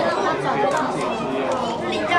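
Several people talking at once, voices of children and adults overlapping in a busy room.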